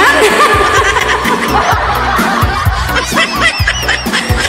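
A woman laughing and chuckling into a microphone over background music.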